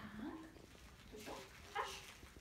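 A dog making brief vocal sounds, a short one at the start and a louder one near the end.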